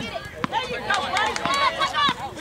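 Several voices shouting over one another during soccer play, calls rather than clear words, with a few short sharp knocks among them.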